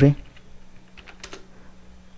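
Computer keyboard keys being typed: a few faint, scattered keystrokes.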